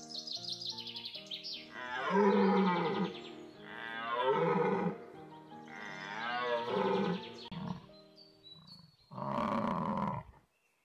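Animal-call sound effects, four loud, drawn-out cries with wavering pitch about two seconds apart, played over light background music.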